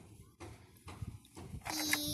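A child's voice starting one long held vowel near the end, after faint taps and handling noise from a small toy.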